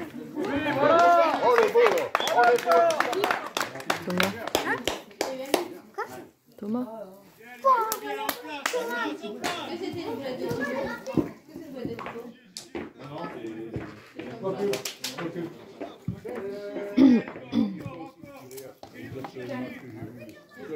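Players and spectators shouting and calling out across a football pitch, several voices overlapping, loudest in the first few seconds, with a few sharp knocks scattered through.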